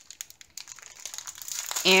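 Clear plastic bags of diamond-painting drills crinkling as they are handled, a scatter of quick crackles that grows busier through the second half.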